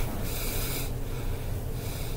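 A person breathing out heavily close to the microphone about once in the first second, over a steady low electrical hum.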